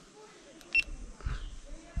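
GoPro Max 360 action camera gives one short, high beep about a second in as recording is started. It is followed by low handling rumble and a click near the end as the camera is moved on its grip.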